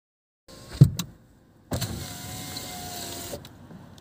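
A loud thump and a click, then a steady whine with a thin, nearly level tone lasting about a second and a half, like a small electric motor.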